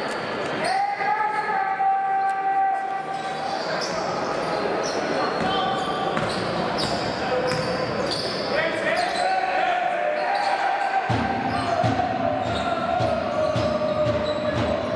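Basketball bouncing on a hardwood court in a large hall, with voices. A long held tone sounds twice over it, the second time sliding slightly lower.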